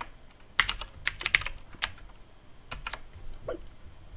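Computer keyboard being typed on in short runs of keystrokes: a quick run about half a second in, a single key near two seconds, a few more near three seconds, then quiet.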